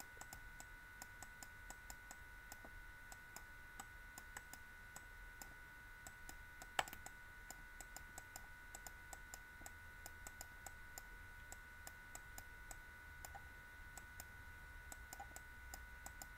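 Faint, irregular clicking and tapping of a stylus on a tablet while handwriting, several clicks a second, with one louder click about seven seconds in. A faint steady electronic whine sits underneath.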